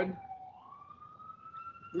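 An emergency-vehicle siren wailing faintly, its pitch sliding down and then slowly climbing again in one long sweep.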